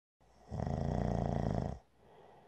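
A man snoring: one rattling snore lasting just over a second, starting about half a second in.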